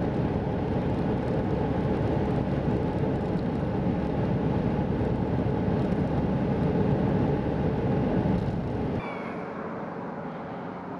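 Steady engine and road noise from a vehicle driving along a highway. It cuts off abruptly about nine seconds in, leaving a much quieter background with a faint high chirp or two.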